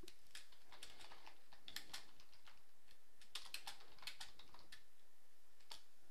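Typing on a computer keyboard: faint, irregular runs of key clicks, thickest in the middle, with a single last click near the end.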